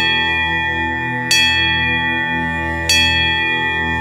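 A bell in a devotional music track, struck three times about a second and a half apart, each stroke ringing on over a steady drone.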